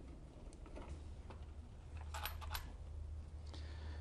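Faint, scattered small clicks and taps of hands and a tool working at the flasher relay and its wiring, over a low steady hum.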